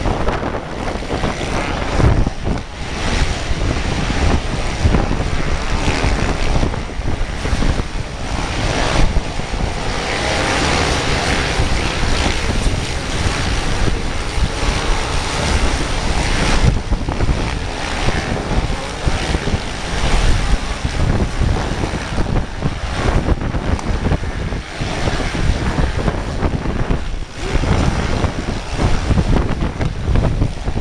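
Storm wind buffeting the microphone in gusts, with a pack of motocross motorcycles racing on the beach in the distance underneath.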